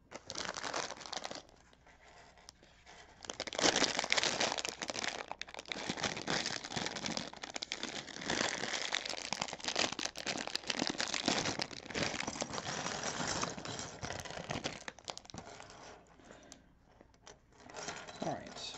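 Thin plastic LEGO parts bag crinkling as it is handled and shaken out, with small clicks of plastic pieces; a short burst at the start, then nearly continuous crinkling through most of the rest.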